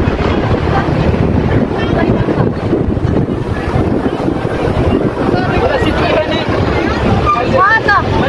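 Wind buffeting the microphone at an open bus window, over the steady rumble of the moving bus and its road noise, with passengers' voices faintly underneath.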